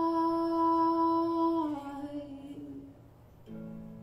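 A woman's voice holding one long sung note, which steps down to a lower note a little under two seconds in and fades away. A soft piano chord sounds near the end.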